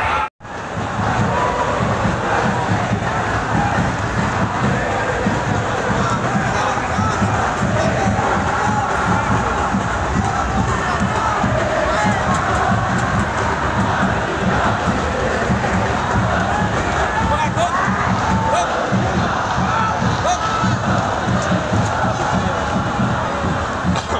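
Large stadium crowd of football supporters chanting and cheering together in celebration of their team's win, a dense, steady wall of many voices. The sound cuts out for a moment just after the start.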